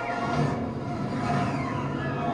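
Film trailer soundtrack playing through room speakers: a rumbling spaceship sound effect under sustained music tones, with no dialogue.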